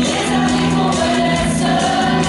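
Mixed choir of men's and women's voices singing together, holding several notes at once in harmony.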